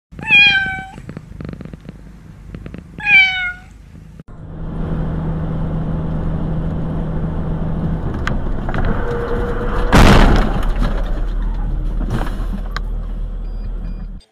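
A kitten meowing twice, each meow falling in pitch. Then the steady engine and road noise of a moving car, broken by a sudden loud bang about ten seconds in.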